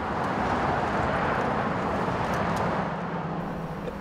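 Motorway traffic noise, a steady rush of tyres and engines that swells as vehicles pass about a second in and then slowly fades.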